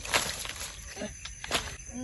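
A few soft knocks and rustles as live snakehead fish are handled on a plastic sack on the ground, over a steady high-pitched background tone.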